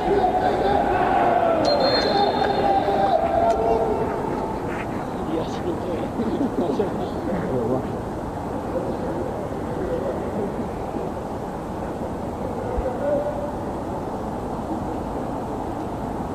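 Players and coaches shouting and calling to each other across an open football pitch, over the steady hum of an almost empty stadium. The calls are most frequent in the first few seconds and thin out after that.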